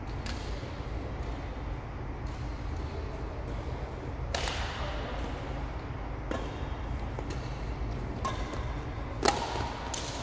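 Badminton racket hits on a shuttlecock: a few short, scattered knocks, the sharpest and loudest near the end, over a steady low rumble.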